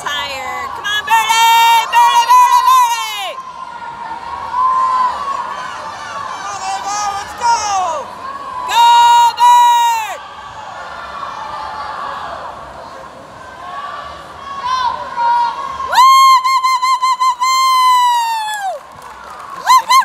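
Crowd cheering on swimmers during a race: a continuous hubbub broken by three bursts of loud, high-pitched, drawn-out shouts, near the start, about halfway through and near the end.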